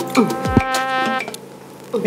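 Background comedy music cue: a buzzy sustained note with quick downward swoops, fading out about a second and a half in.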